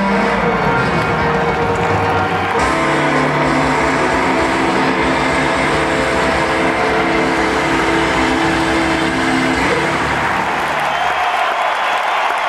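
Live band ending a slow blues. Electric guitar, drums and the rest of the band hold a final chord for several seconds, then the low end drops out near the end as the band stops and crowd applause comes up.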